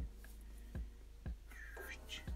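Black felt-tip marker drawing on paper: faint scratching strokes with soft knocks about every half second, and a brief high squeak near the end.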